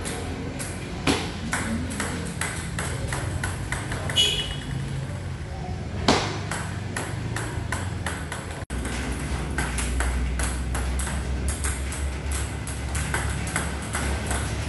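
Table tennis ball and paddle in a solo multiball drill: quick, regular clicks of the ball being struck and bouncing on the table, about two to three a second, over a steady low hum.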